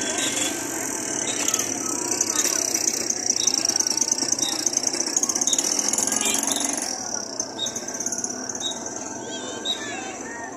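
Busy street-parade ambience: crowd voices and music, with a motorcycle engine passing close during the first several seconds before the sound drops back.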